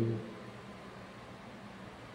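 Quiet room tone: a steady faint hiss in a small room, after the last syllable of a spoken word at the very start.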